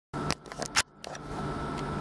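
Handling clicks and knocks from a camera as recording starts, several in the first second, over a low steady hum that settles about a second in.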